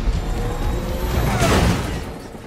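Film trailer soundtrack: dramatic score over a low rumble, with a whoosh about a second and a half in.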